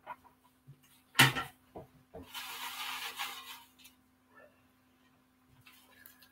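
Paper raffle tickets rustling as a hand rummages through them and unfolds one, preceded by a single short sharp sound about a second in.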